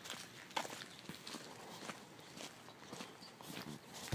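Faint footsteps on pavement: scattered soft scuffs and ticks at a slow walking pace.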